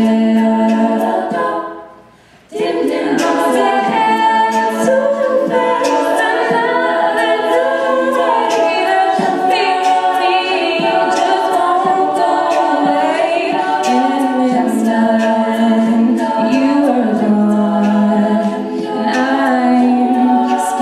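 All-female a cappella group singing live: a solo voice over sustained backing harmonies, with vocal percussion keeping a steady beat. About two seconds in, all the voices cut off for a brief pause, then come back in together.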